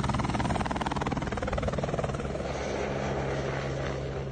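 Helicopter rotor chopping rapidly and evenly with the engine drone beneath, growing a little fainter toward the end.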